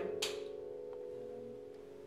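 A single sharp clapperboard snap just after the start, over a held chord of background music that slowly fades away.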